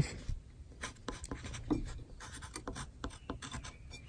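Carpenter's pencil writing on a wooden board: a run of short, irregular scratchy strokes as pitch labels are pencilled beside marked rafter cut lines.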